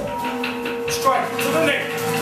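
Māori warriors' voices calling out during a taiaha strike drill, one voice held on a long steady note for nearly two seconds, with a few light knocks of movement.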